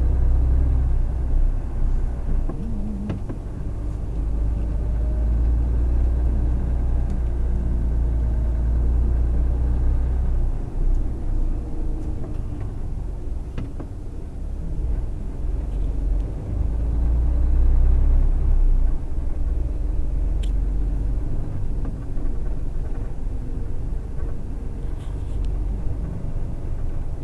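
Engine of a slow-moving vehicle running with a steady low rumble, heard from inside the cab. The rumble swells in the first half and again briefly past the middle.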